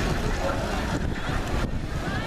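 Wind buffeting the microphone: a steady, uneven low rumble, with faint voices of people nearby under it.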